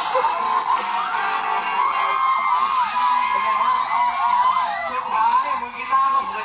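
A live band playing through a stage PA, with a sung or shouted voice and other voices over it. It sounds thin, as recorded on a phone from the crowd.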